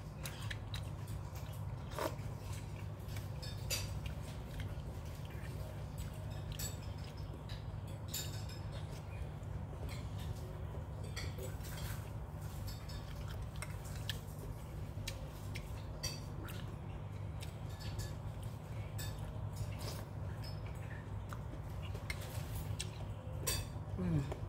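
Scattered light clicks of a plastic spoon against a ceramic bowl while someone eats, over a steady low hum.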